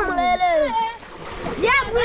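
Children's high-pitched shouts and calls, with water splashing as they play in a river.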